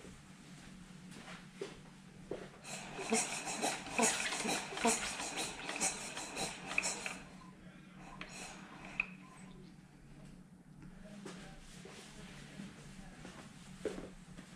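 Hands and tools working on a bare 1198 motorcycle engine during a timing-belt tension check: a few seconds of close clicking and rustling, then scattered single clicks, over a steady low hum.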